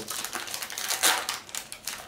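Foil wrapper of a Yu-Gi-Oh! booster pack crinkling and tearing as it is opened by hand, an irregular crackle of small clicks.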